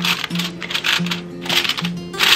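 Aluminium foil crinkling in several short bursts as hands press and crimp it tightly around the rim of a bowl to seal it. Background music with a repeated low note plays underneath.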